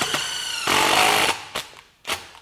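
A DeWalt XR cordless impact driver hammering a 3/8-inch Spyder Mach Blue Stinger bit through steel plate more than 3/8 inch thick, with a high whine over the rattle. It grows louder for a moment, then winds down and stops about a second and a half in as the hole is finished.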